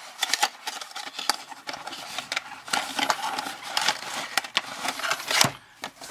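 Cardboard flashlight box being opened by hand: the end flap is pried up and the contents slid out, with irregular scraping, rustling and small clicks of cardboard and plastic. There is one sharper tap near the end.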